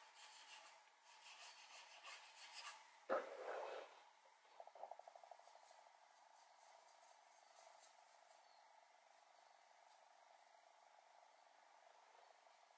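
Faint scratching and rubbing of a paintbrush mixing thick acrylic paint on a palette and working it onto paper, with one sharper knock about three seconds in. After the first few seconds it settles to near silence.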